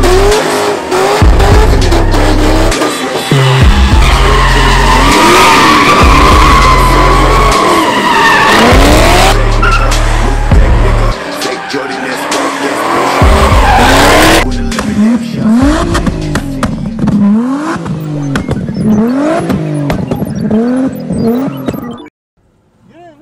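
Car engines revving up and down again and again, with tires squealing through burnout and donut smoke, under music with a heavy stop-start bass line. The bass and the music's top end drop out about two-thirds of the way through, leaving the revving.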